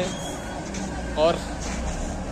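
Steady low rumble of road traffic, vehicle engines running nearby.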